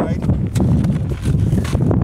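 Wind buffeting the microphone in a steady low rumble, with a few sharp knocks and rustles as the landed balloon payload box is handled.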